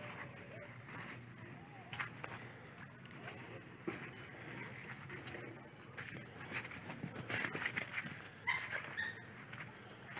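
Footsteps and rustling of someone walking through grass and brushing past shrubs, with scattered small clicks that thicken about three-quarters of the way in. A few short high chirps sound near the end.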